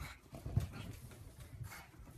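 A pug running and jumping about on a bed: soft, irregular thumps of its paws landing on the mattress, the loudest about half a second in, along with the dog's breathing.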